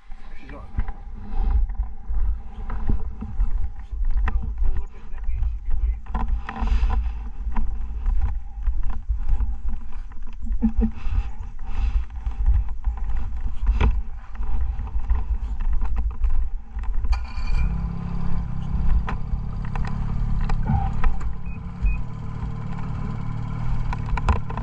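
Low rumble and knocks of handling and wind on the microphone. About two-thirds of the way in, a Ski-Doo snowmobile's Rotax 500 two-stroke engine starts and then runs steadily.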